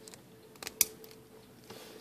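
A few light metallic clicks of a socket and universal swivel being handled and fitted together, the loudest a little under a second in, over a faint steady hum.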